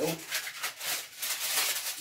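Aluminium kitchen foil being crinkled and handled, a continuous irregular crackling rustle.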